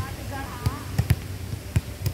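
A ball being hit and bounced during a volleyball game: about six sharp, irregularly spaced thuds, with faint voices in the background.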